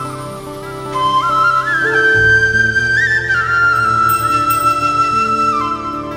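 Flute playing the instrumental intro melody of a song, sliding between notes, over electronic keyboard chords and a bass line.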